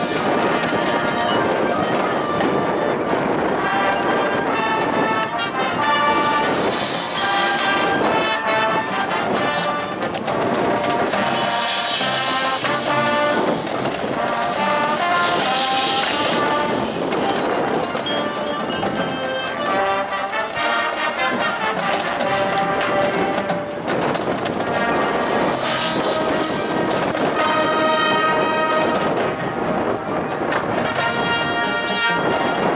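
High school marching band playing its field show: a full brass section carrying the melody over percussion, with a few bright crashes along the way.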